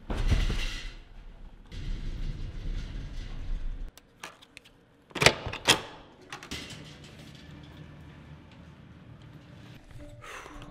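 Elevator cabin rumbling low during the ride, then two sharp clicks a half-second apart from a hotel room door's lock and latch as it opens, followed by a low steady hum.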